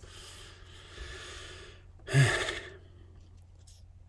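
A man breathing between sentences: a faint, long breathy exhale, then just after two seconds a short, louder sighing breath with a touch of voice in it.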